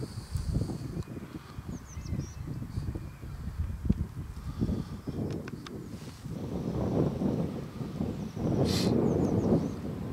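Outdoor low rumble with a few faint, short bird chirps. A louder rustling noise comes near the end.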